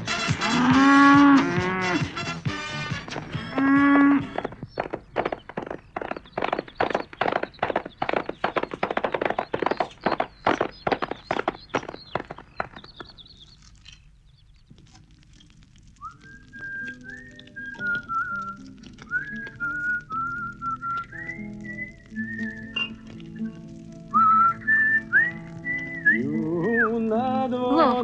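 Cows mooing several times, then a regular run of sharp knocks, about three a second, fading out. After a near-quiet pause, a melody in a high whistle-like tone begins over soft sustained chords.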